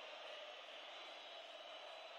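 Faint, steady hiss with no distinct events: near silence between two pieces of music.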